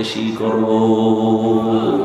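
A man's voice chanting a single long, held note in the sung sermon style of a Bengali waz, amplified through a microphone. The note holds steady in pitch for most of two seconds and then fades.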